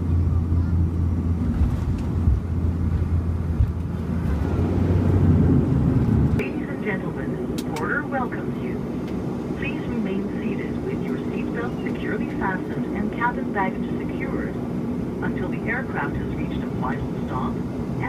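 Bombardier Q400 turboprop engines heard from inside the cabin on landing: a steady propeller drone that swells about four seconds in and drops sharply about six seconds in. After the drop a quieter engine hum continues under indistinct voices.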